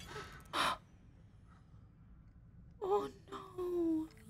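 A short sharp gasp about half a second in, then near the end a drawn-out wailing cry that falls in pitch, from the film's soundtrack as a character reacts to gunfire.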